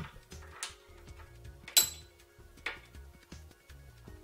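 Metal die halves and parts of a bench-mounted brake line flaring tool clicking against each other as they are handled and fitted, with one sharp ringing clink a little before the middle and a softer click about a second later. Faint background music with a steady held tone runs underneath.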